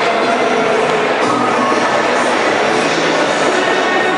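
Loud music over an ice hockey arena's public-address system, with held notes over a dense, steady background of hall noise.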